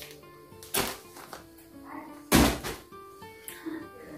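Soft background music of steady held notes, with two sudden thumps, about a second in and, louder, about two and a half seconds in, as a plastic-wrapped pack of tissues is handled and set down.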